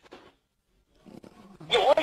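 A pause in conversation: about a second of near silence and a few faint sounds, then a voice starts talking again about one and a half seconds in.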